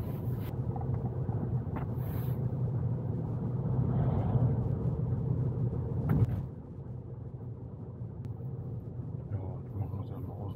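Road and tyre noise heard inside the cabin of a moving Tesla Model Y electric car: a steady low rumble with no engine sound. A short knock comes about six seconds in, after which the rumble is quieter.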